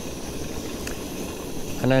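Portable gas camping stove burning steadily under a lidded pot of vegetable stew, giving a steady low hiss as the pot heats. A man's voice starts near the end.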